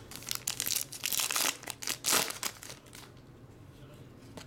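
Foil trading-card pack wrapper crinkling as it is torn open by hand, a run of crackles that dies down after about two and a half seconds.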